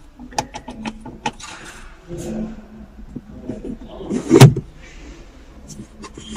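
Manual gear lever of a car being worked by hand: a series of light clicks and clunks in the first second or so, then one loud clunk about four and a half seconds in.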